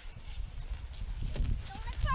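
Low rumble of wind on the microphone, growing louder. Near the end a child's high, warbling vocal sound begins, gliding up and down in pitch.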